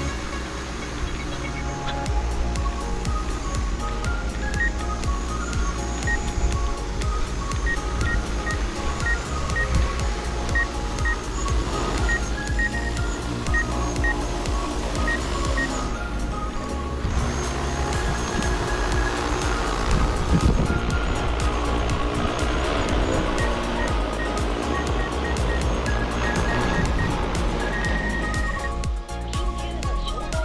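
Background music with a melody of short high notes, over a steady low hum.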